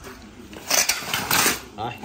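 Rustling and scraping of brush-cutter parts being handled on a concrete floor: about a second of noisy scuffing with a few sharp knocks.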